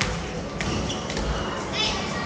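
A basketball bouncing on a wooden gym floor, with a couple of sharp thuds, over the voices of children playing in a large hall.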